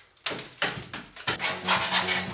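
Old wall plaster being scraped off by hand with a scraper, in a series of short scraping strokes.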